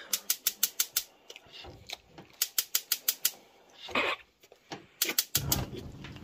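Gas stove burner's spark igniter clicking rapidly, several clicks a second, in three runs as the knob is held at LITE. Near the end the burner catches and a low steady burner noise follows.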